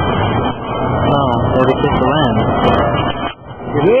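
Indistinct talking from close, overlapping voices, with a brief lull a little after three seconds and a laugh at the very end.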